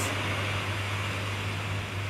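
Steady hiss with a low, even hum underneath: the constant background noise of the voice recording, unchanged through the pause.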